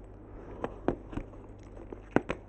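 A few light, sharp clicks and taps from handling the cardboard iPad box and its packaging, the clearest spaced about a quarter of a second apart in the first half.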